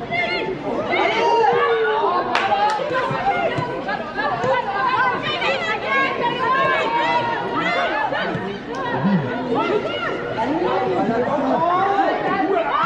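Many voices chattering and calling out at once around a football pitch, with a couple of sharp knocks a little over two seconds in.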